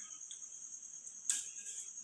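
Faint, steady high-pitched chirring of crickets, with one brief scrape or knock of utensils about a second and a half in.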